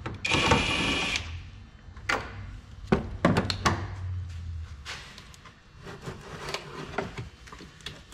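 Cordless power tool runs for about a second with a high whine, driving out a bolt that holds the coolant overflow tank. It is followed by several sharp clicks and knocks of tools and plastic parts being handled.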